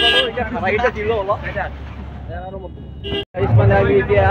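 Street traffic with a vehicle horn held until just after the start, then people's voices, and a short horn toot a little after three seconds in.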